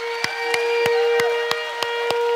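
A held musical chord with steady tones, and congregation hand claps scattered through it.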